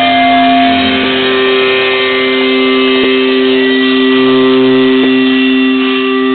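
Distorted electric guitar through a stage amplifier, held notes and feedback droning at a steady pitch, loud, with faint ticks about every two seconds.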